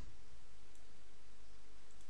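A few faint computer keyboard key clicks over a steady background hiss.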